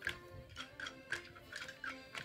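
Light drumstick strikes from a children's carnival drum corps, crisp and evenly spaced at about three to four a second, playing quietly with faint held notes underneath.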